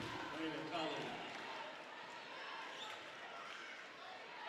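Faint hardwood-gym ambience during a girls' basketball game: a basketball being dribbled on the court under low crowd murmur.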